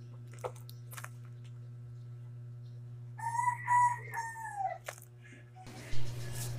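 A rooster crowing once, about three seconds in: a call of several short segments, the last one drawn out and falling in pitch, under two seconds in all, over a steady low hum. A sharp knock right at the end.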